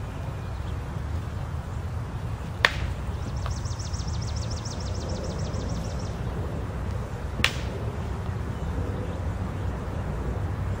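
Practice swords making contact: two short sharp clicks, about 2.5 and 7.5 seconds in, over a steady low outdoor rumble. Between the clicks a high, rapid trill of about eight pulses a second runs for under three seconds.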